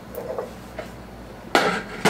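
Metal jar lids and screw bands clattering as they are handled: a few faint clicks, then a loud burst of metallic clinking about one and a half seconds in.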